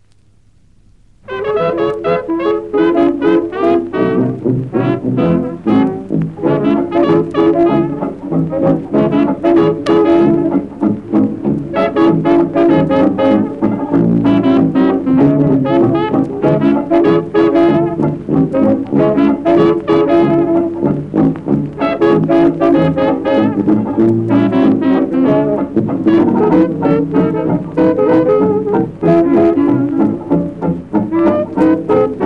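After about a second of faint hum, a traditional jazz band recording starts, with trumpet and trombone leading the ensemble.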